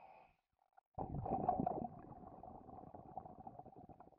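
Sound effect: a crackling rumble with a steady hum beneath it. It starts abruptly about a second in, is loudest for its first second, then carries on softer until it stops near the end.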